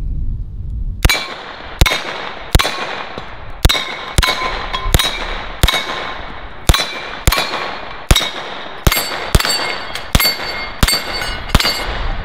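Short-barrelled Uzi 9mm firing about eighteen single shots in quick succession, roughly two a second, each hit answered by the ringing clang of a steel Texas star plate. The shooting starts about a second in and ends just before the end.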